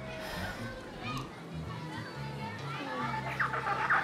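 Background of distant children playing and calling out, over a soft music bed, with a cluster of shrill high calls near the end.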